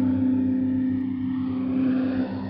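Shortwave radio broadcast on 9385 kHz received through an SDR: low, held musical tones of slow ambient music under a steady hiss of static.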